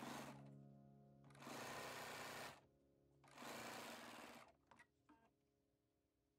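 Bernina B570 sewing machine stitching in short runs, the two longest about a second each.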